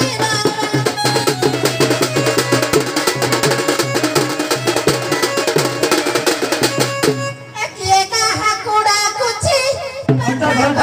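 Live Odia folk dance music: fast hand-drumming with a steady low instrumental drone. About seven seconds in the drumming cuts off and a voice begins singing over a sparser backing.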